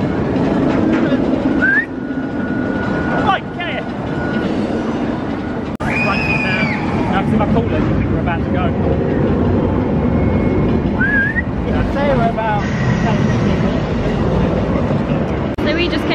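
Steady rumble of a roller coaster running on its track, with a few short, high gliding cries over it. The sound drops out briefly just before the sixth second at an edit.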